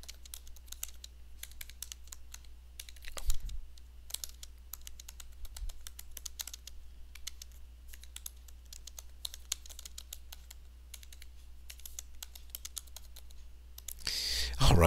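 Typing on a computer keyboard: a steady run of irregular key clicks as a sentence is typed, with one louder thump about three seconds in. A low steady hum runs underneath.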